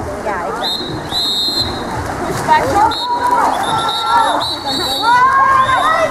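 Spectators shouting and cheering, with a referee's whistle blown in several short, high blasts from about a second in.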